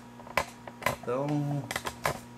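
Several sharp, irregular clicks and knocks from a much-repaired camera tripod, glued together after coming apart many times, as it is handled.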